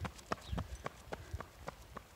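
Footsteps of a child running on an asphalt driveway: a quick, even run of footfalls, about five or six a second.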